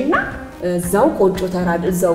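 A woman speaking Amharic in a lively, exclaiming voice, her pitch sweeping sharply upward on a couple of words.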